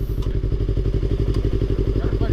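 Yamaha RZ350R's two-stroke parallel-twin engine running at low speed close alongside, a steady, evenly pulsing beat.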